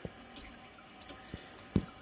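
GE GDF630 dishwasher filling with water at the start of a cycle: a faint, steady hiss of water running into the machine, with a few light knocks.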